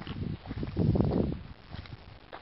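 Footsteps in flip-flops on a dry dirt and grass trail, with one longer scuffing crunch from about half a second to a little past the middle.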